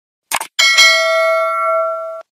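Subscribe-button animation sound effects: a short click, then a bright notification-bell ding with several ringing pitches that holds for about a second and a half and cuts off sharply.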